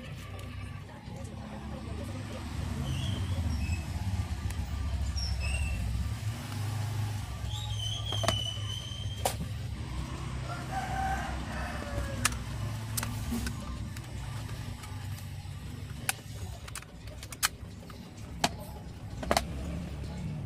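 Metal set-top box casing being handled and fitted back together: a scatter of sharp clicks and knocks, more of them in the second half. Underneath runs a low rumble that is strongest in the first half, with a few short high chirps.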